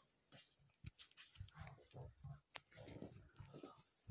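Near silence: room tone with a few faint short sounds and a couple of soft clicks.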